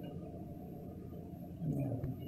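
Low, steady room noise, with a short faint murmur of a voice near the end.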